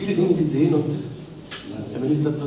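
A man speaking, with a short pause in the second half.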